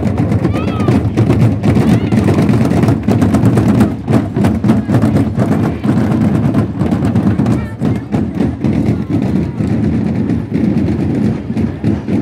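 A marching drum band playing loud, dense drumming, with many rapid sharp hits, over crowd voices.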